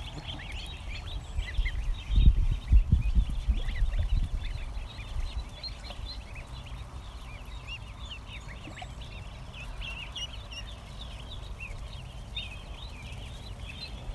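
A large flock of ducklings and goslings peeping, a dense chatter of short high peeps. A burst of low rumble comes about two seconds in.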